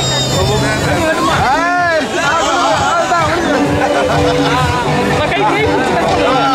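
Many guests talking over each other in a close crowd, with music playing underneath.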